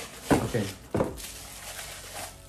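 Cardboard box and bubble wrap rustling as a bubble-wrapped glass container is pulled out of its box, with a sharp crinkle or knock about a second in.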